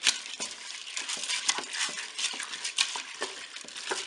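A wooden spatula stirring uncooked coquillettes pasta, chicken pieces and water in the bowl of a Cookeo multicooker: a busy run of scrapes and small clicks against the pot, opening with one sharp click.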